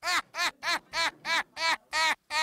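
A comic sound effect added in the edit: a rapid run of short pitched tones, about four a second, each swooping up and back down in pitch.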